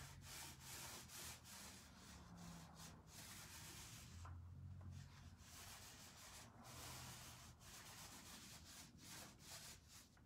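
Faint foam sponge roller rolling chalk paint across a wooden tabletop, quick back-and-forth rubbing strokes about three a second, with a short pause about four seconds in.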